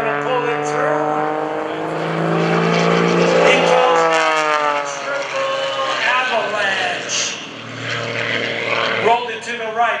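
MX-2 aerobatic monoplane's 350-horsepower engine and MT propeller in flight, its pitch sliding down, then up, then down again as the aircraft works through its manoeuvres.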